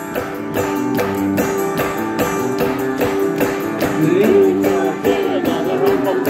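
A live band playing: guitar chords over a steady hand-clap beat, with a voice singing in the second half.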